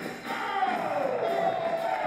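Breakdance battle music with a crowd cheering, from the battle footage being played back, with a long falling glide in the middle.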